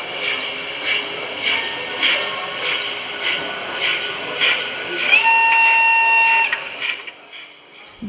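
Sound of an O-scale model steam tank locomotive: steady exhaust chuffs, a little under two a second, with a steam whistle held for about a second and a half around the middle. The chuffing fades away near the end.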